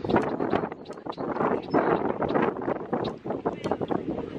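Wind buffeting the microphone, with irregular rustling and knocks from walking through grass and brush.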